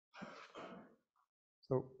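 A person clearing their throat: a brief two-part rasp lasting under a second.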